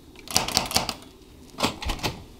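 Metal door knocker with a built-in peephole rapped against its strike plate: a quick run of sharp metallic knocks, then two more near the end.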